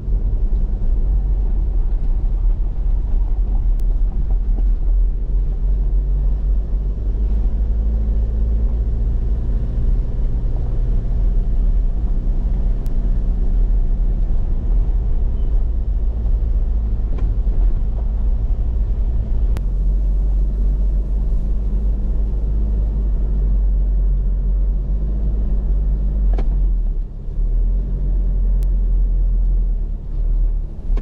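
Car engine and road rumble heard from inside the cabin while driving, a steady low drone whose engine note rises and falls a little with the throttle, dipping briefly near the end.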